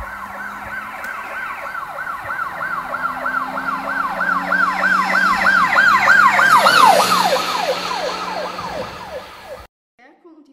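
Police car siren sound effect wailing in quick rise-and-fall sweeps, about three a second. It grows louder as the car approaches, drops in pitch as it passes about seven seconds in, then fades and cuts off just before the end.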